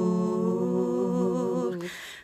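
A woman's layered a cappella voices holding a hummed chord in harmony, dying away near the end.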